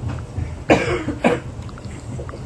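A person coughs twice, about two-thirds of a second and a second and a quarter in, the first cough longer than the second, over a low steady hum.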